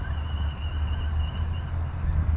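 Wind buffeting the microphone in a steady, fluttering low rumble, with a faint thin high tone running through most of it.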